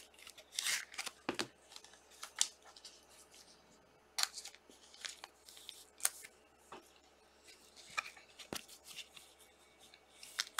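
Trading cards being handled and slid into thin clear plastic sleeves: irregular soft rustles and crinkles with sharp little clicks.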